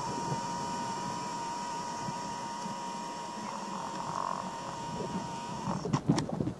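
Steady background hiss with a faint constant high-pitched whine, and no distinct events.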